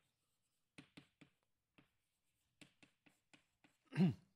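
Chalk writing on a blackboard: a scattered series of faint, short taps and clicks as the chalk strikes and strokes the board. Right at the end comes a brief, louder voice sound that falls in pitch.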